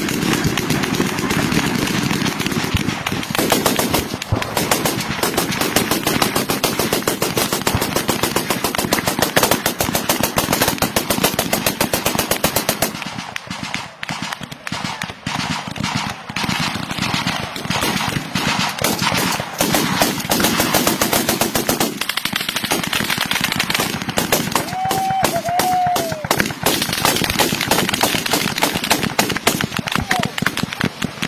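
Sustained rapid automatic gunfire, many shots a second in long dense strings. It thins out and drops in level for several seconds in the middle, then picks up again just as heavy.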